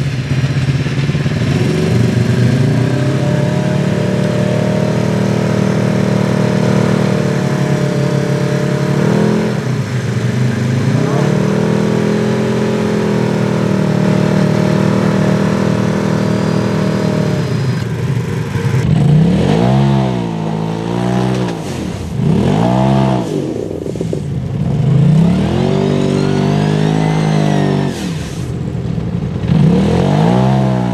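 A Polaris RZR side-by-side's engine working in deep mud: revs held high for several seconds at a time, dropping briefly around ten seconds in. From about two-thirds through, the throttle is blipped over and over, revs rising and falling about every second or two.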